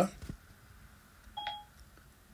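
A single short electronic beep about one and a half seconds in, two tones sounding together, one low and one high.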